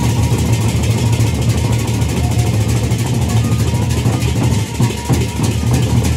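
Sasak gendang beleq ensemble playing loud and without a break: big double-headed barrel drums struck with sticks in a fast, dense rhythm over a steady low ringing, with a bright metallic wash of cymbals on top.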